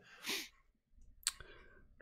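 A soft breath near the start, then a single sharp click a little over a second in, followed by a few faint ticks.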